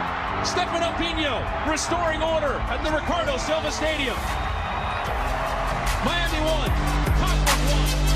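Background music mixed with football broadcast audio: shouting voices and crowd noise as a goal is scored. The music's steady bass and chords come up more strongly in the last couple of seconds.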